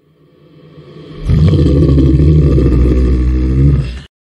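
A reversed trap sound effect: a deep, bass-heavy sound swells in from silence, jumps to full loudness about a second in, holds, then cuts off abruptly, the sharp stop of a sample played backwards.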